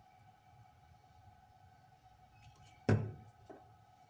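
A spool of solder wire set down on a wooden table: one sharp knock about three seconds in, with a few small handling clicks around it, over a faint steady hum.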